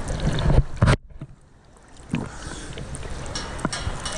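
Small sea waves splashing and sloshing against an action camera held at the water's surface. About a second in, the sound suddenly drops away to a quiet, muffled hush as the camera dips under, and the splashing comes back about two seconds in.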